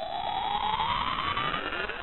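A rising sweep sound effect: one tone gliding steadily upward in pitch over a noisy wash.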